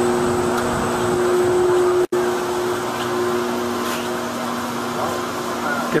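Steady rush of air and fan hum from data-center server fans and air handling in a sealed hot aisle, with two low steady tones under the noise. The server fans are turning slowly. The sound cuts out for an instant about two seconds in.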